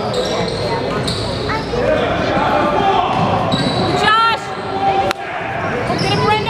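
Sounds of a basketball game in an echoing gym: a basketball bouncing on the hardwood floor and spectators chatting, with sneakers squeaking on the court about four seconds in and a sharp knock a second later.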